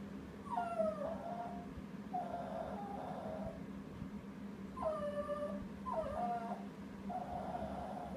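Small dog whining in a drawn-out, mournful way: five separate calls, each about a second long, sliding down from a higher pitch and then holding. This is the dog's "sad song" for a ball lost under the furniture out of its reach.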